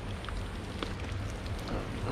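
Water dripping from a cave's rock face: a steady hiss of falling water with scattered separate drip ticks.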